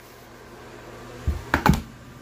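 Short knocks and taps: a dull thump a little over a second in, then three quick clicking taps close together.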